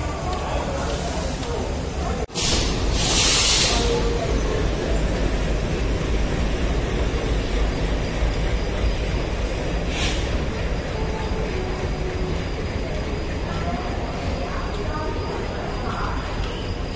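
Railway station platform ambience: a steady low rumble with indistinct distant voices. A loud hiss lasting about a second and a half comes a few seconds in, and a shorter one near the ten-second mark.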